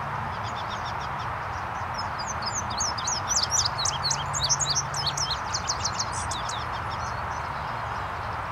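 Male indigo bunting singing close by: a loud song of quick, high, sweeping notes that starts about two seconds in and lasts about four seconds.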